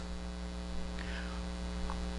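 Steady electrical mains hum, a low buzz holding one even pitch.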